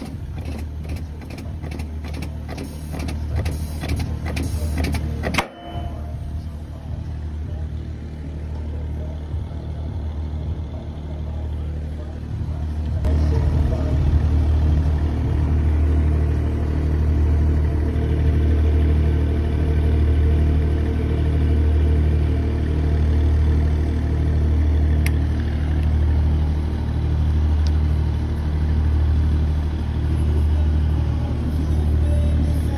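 A machine running with a steady low hum. In the first five seconds there is a quick series of clicks, about two a second, ending in a sharp knock. About thirteen seconds in the hum grows louder, then rises and falls slowly.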